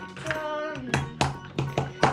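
Background music with steady held notes, over a few light clicks of plastic toy figures being handled and set down on a table.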